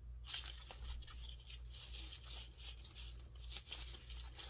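Faint, irregular rustling and rubbing from handling a leather handbag strap and the tissue-paper wrapping around the bag. A steady low hum runs underneath.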